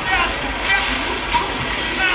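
A jet ski's engine running with churning water and spray.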